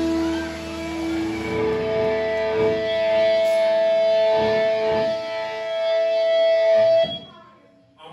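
Amplified electric guitars ringing out in long held notes as a live band ends a song. The held pitch steps up twice, and a few drum hits land under it. The sound cuts off suddenly about seven seconds in.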